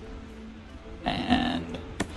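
A man's brief non-word vocal sound about a second in, over quiet background music with steady held tones.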